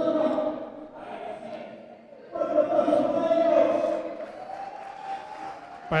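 Amplified sound bleeding in from elsewhere in the venue, echoing in the hall: voices holding long, sung-sounding notes. It dips about two seconds in, comes back louder, then trails off into a single held tone. It is loud enough to halt the talk.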